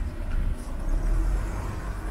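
City street ambience: a steady low rumble of road traffic with no distinct single event.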